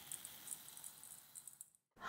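Faint patter of dried urad dal grains pouring into a stainless steel bowl: a scatter of small, light ticks that cuts off to silence near the end.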